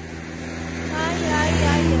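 Engine drone of a motor vehicle in passing traffic. It grows steadily louder for about two seconds, then eases off just after.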